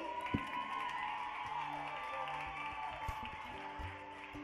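Faint audience applause and crowd noise at the end of a song, with a few soft sustained instrument notes.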